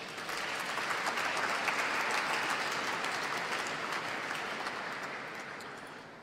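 Audience clapping, swelling over the first second and tapering off toward the end.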